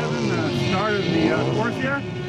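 A person talking, over steady outdoor background noise.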